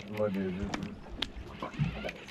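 A man's brief wordless voice sound, followed by a few scattered sharp clicks while a large conventional fishing reel is being cranked.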